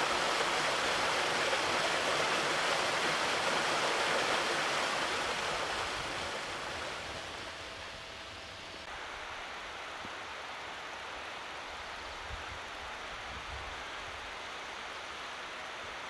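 A small upland stream (beck) running over rocks, a steady rush of water that fades down after about six seconds to a fainter, steady outdoor hiss.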